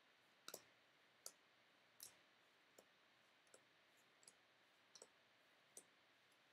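Faint clicks of chrome baseball cards being flicked from the front of a hand-held stack to the back one at a time, about one every three-quarters of a second.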